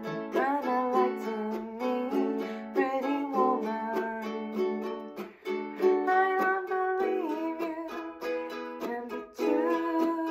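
Pepe Romero Jr. Tiny Tenor koa-wood ukulele strummed in a down, up, chuck, up pattern, changing from F-sharp minor to E about six seconds in. A woman sings the melody along with it.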